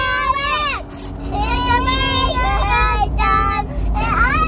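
A young girl singing loudly in long, held, wavering notes, with a steady low rumble of a car cabin underneath.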